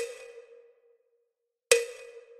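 Metronome clicks in a rest bar of a practice exercise: a click at the start rings briefly and fades to near silence, then a second click comes near the end.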